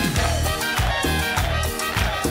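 Salsa-style Latin music with a steady, driving beat.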